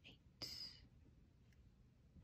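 Near silence except for a softly whispered counting word, "seven", about half a second in.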